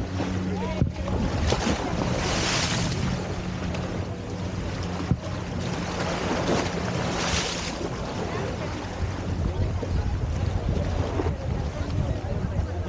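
Choppy harbour water slapping and splashing against a stone seawall, with wind buffeting the microphone; two louder splashes come about two and a half and seven seconds in. A steady low hum runs underneath.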